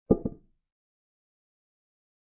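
Chess software's move sound effect as a knight captures a pawn: a short clack of two quick knocks, the second softer.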